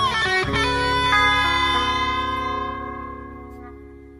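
Electric guitar music at the close of a rock song: a few final chords, then the last one held and fading away over a few seconds.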